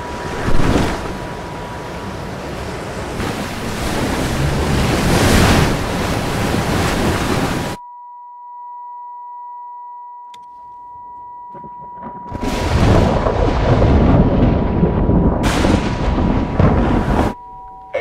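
Storm-at-sea sound effects, heavy wind and waves with a loud hit about half a second in, over a steady high drone tone. The storm noise cuts off suddenly, leaving a held chord of electronic tones. Then the storm swells back in, loud, and cuts off again just before the end.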